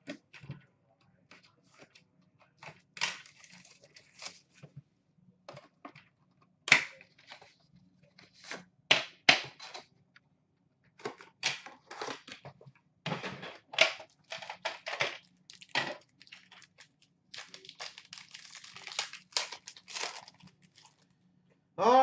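Upper Deck Premier metal card tin being handled and opened: scattered sharp clicks and taps of the tin and its lid, with a few seconds of rustling near the end.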